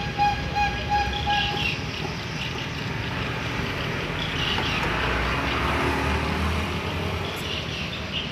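Background traffic noise: a wavering horn-like tone for the first couple of seconds, then a low vehicle rumble that swells and fades around the middle.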